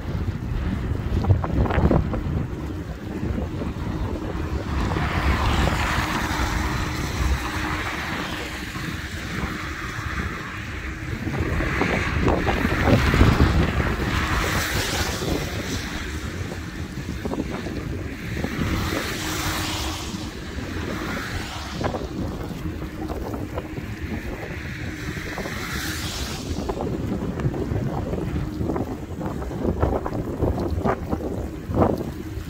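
Wind rumbling and buffeting on the microphone of a moving e-bike, with road and tyre noise on wet asphalt; the hiss swells up and fades several times.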